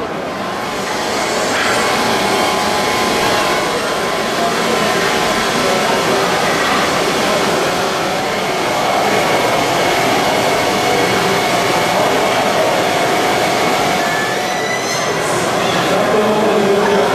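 A large fan or blower running, a loud steady noise with faint humming tones. It rises about a second in and then holds even.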